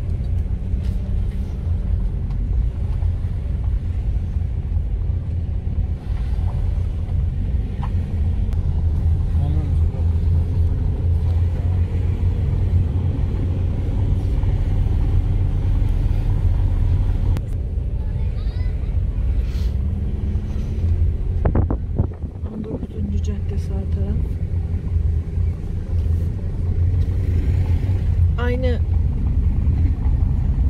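Car driving slowly, heard from inside the cabin: a steady low engine and road rumble, with a short rattle of knocks about two-thirds of the way through.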